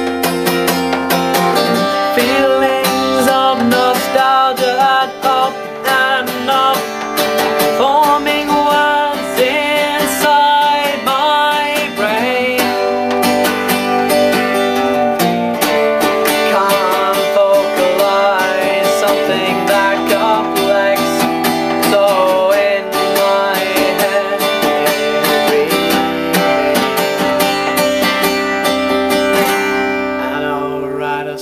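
Music: a song with strummed acoustic guitar chords and a wavering melody line over them.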